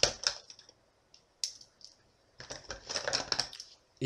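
Plastic pens clicking and clattering against each other as they are handled and picked out of a pen pot: a few sharp clicks in the first two seconds, then a longer run of clatter near the end.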